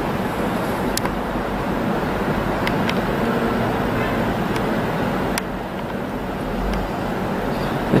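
Steady rushing background noise with a few faint clicks.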